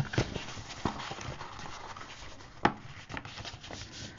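Cardstock being folded and pressed by hand on a wooden tabletop: steady rustling and rubbing of paper, with a few sharp taps, the loudest about two and a half seconds in.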